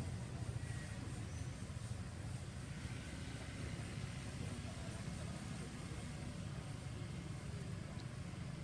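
Steady low outdoor rumble with no distinct events.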